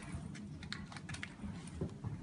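A scatter of small, light clicks and taps in the first second or so, from gloved hands handling a filler syringe as it is brought up to the nose.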